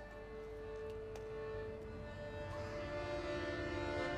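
Instrumental music with no singing: held notes that grow gradually louder through the passage.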